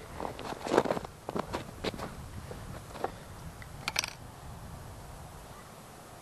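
Footsteps in snow and clothing rustle as a person gets up from kneeling and steps back, with light knocks and clicks from handling a rifle. The sharpest is a double click about four seconds in; no shot is fired.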